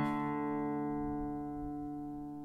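The closing strummed chord of a nylon-string classical guitar left ringing and slowly dying away, with no new strokes.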